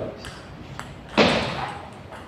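Table tennis rally: the ball gives sharp, short clicks off bats and table, echoing in a large hall. A louder, longer burst comes a little over a second in.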